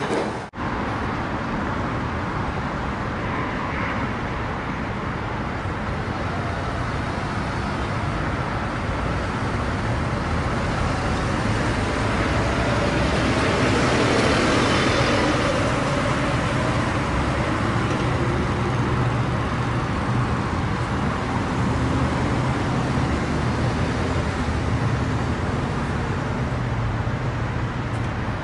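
Road traffic noise, steady and continuous, swelling louder about halfway through before settling again.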